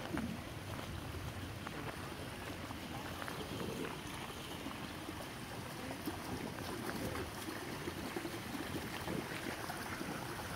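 Shallow spring-fed stream flowing over stones and moss, a steady running-water sound.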